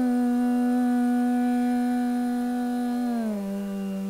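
A woman's Carnatic vocal in raga Neelambari holding one long steady note, which slides down to a lower note about three seconds in and holds there.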